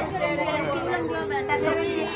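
Several people talking over one another, with one voice holding a long, steady note in the second half.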